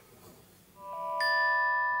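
A phone alarm tone ringing: bell-like mallet notes come in a little under a second in, each new note sounding over the ones still ringing.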